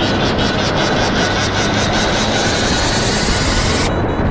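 Honda CBR125 single-cylinder four-stroke engine running under way, its pitch rising slowly as the bike gathers speed, under heavy wind noise on the helmet camera's microphone.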